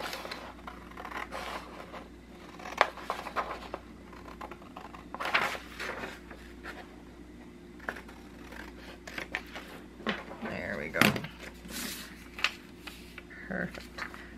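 Scissors cutting through paper in short, irregular snips, with the paper rustling as it is handled.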